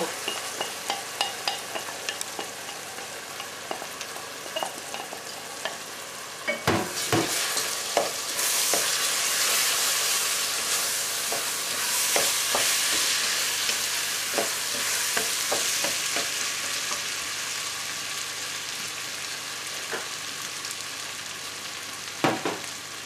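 Red lentils frying and sizzling in a pot of sautéed onion and tomato, stirred with a wooden spoon that scrapes and knocks against the pot. The sizzle swells about a third of the way in and then slowly dies down.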